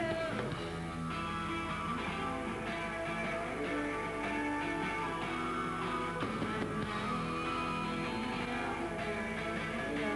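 Live rock band playing loud electric guitars in sustained strummed chords with bass, a steady wall of sound throughout.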